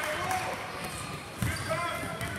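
A basketball bouncing on a hardwood gym floor, with a louder thud about one and a half seconds in, under the voices of players and spectators echoing in the gym.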